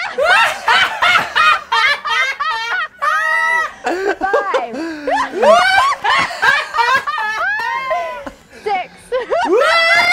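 A man forcing a loud, exaggerated fake laugh, imitating a laughing exercise: quick repeated 'ha' syllables about four a second, then a long drawn-out 'haaa' about three seconds in, with more laughing after.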